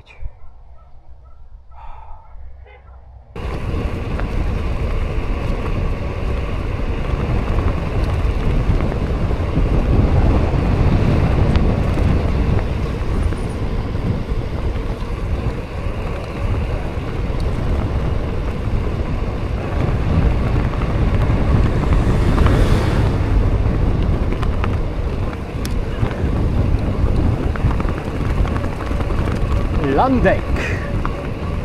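Wind buffeting an action camera's microphone while riding a bicycle, with road noise. It is a loud, steady rushing that starts abruptly about three seconds in, after a quiet stretch.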